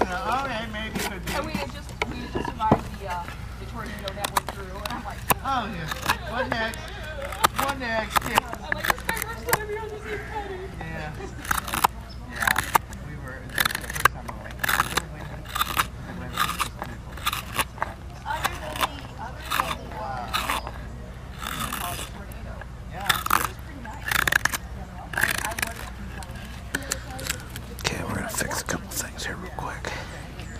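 Spoon knife cutting into green walnut, hollowing a ladle bowl: a run of short scraping, crunching cuts at about two a second through the middle and latter part. Voices talk in the background during the first third.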